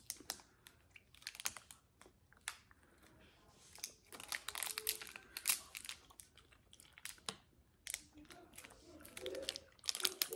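Thin plastic candy wrappers crinkling and tearing as twisted candy sticks are unwrapped by hand, in irregular soft crackles.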